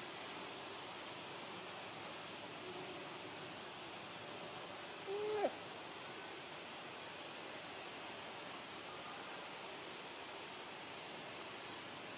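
Faint steady forest background with a quick run of high ticks in the first couple of seconds. About five seconds in comes a single short, low hooting call that drops away at its end, and a sharp click sounds just before the end.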